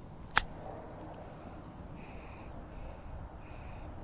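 A golf club striking a golf ball once on a short chip shot: one sharp click about half a second in, then quiet outdoor background while the ball rolls.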